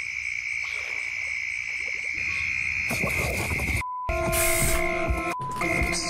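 Steady high chirring of night insects, an outdoor chorus by the water. About four seconds in there is a brief dropout, and then a steady, held droning chord takes over.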